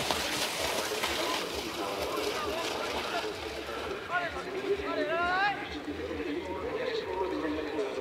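Outdoor race-course sound of a cross-country skier skating on snow: a steady hiss of skis and poles. A voice calls out briefly about halfway through.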